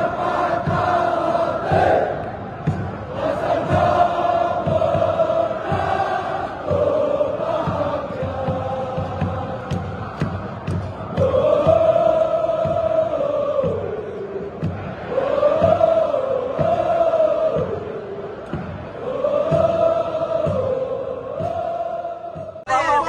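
A large crowd of football supporters chanting in unison to a steady drumbeat, the sung lines held in long phrases that rise and fall.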